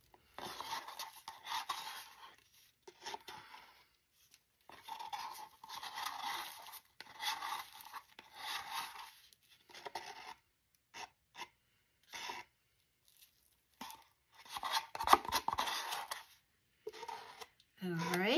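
Wooden stir stick scraping thick white resin out of a paper cup, in a series of short scraping strokes with brief pauses between them, the strongest near the end.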